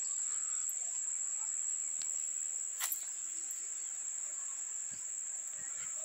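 Steady, unbroken high-pitched insect trill, with a couple of faint clicks a few seconds in.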